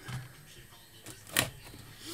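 A quiet room with one short, sharp knock about one and a half seconds in, from an object being handled on a desk.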